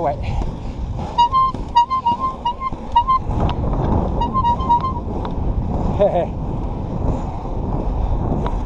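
Inline skate wheels rolling on asphalt, a steady rumble with the rhythm of the skating strides. Over it come two quick runs of short, high-pitched beeping notes, the first about a second in and the second around four seconds in.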